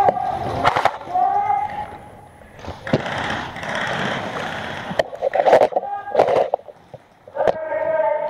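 An airsoft game in a large hall: about six sharp cracks spread through the few seconds, with shouted voices near the start and again in the middle, and a rustle of movement between them.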